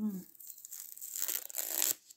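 Rustling and crinkling of a roll of white ribbon and its wrapping being picked up and handled, growing louder toward the end.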